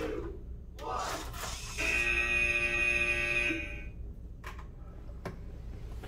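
Match timer's end-of-match buzzer: one steady, loud electronic tone lasting a little under two seconds, starting about two seconds in as the countdown reaches zero.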